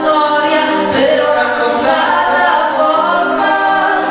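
Vocal music: a man and a woman singing a duet, the voices carrying the song with little else prominent.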